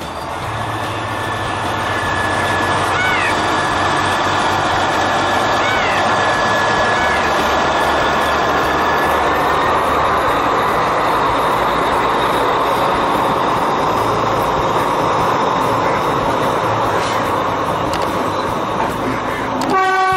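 Sri Lanka Railways Class S8 diesel multiple unit running past at close range: a steady loud rumble of the engine and carriages that builds over the first couple of seconds, with a steady high-pitched whine through the first half. A short horn toot sounds right at the end.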